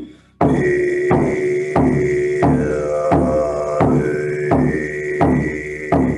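Shaman frame drum beaten in a slow, steady heartbeat rhythm, about three strokes every two seconds, with a didgeridoo drone coming in about half a second in and held over the beat.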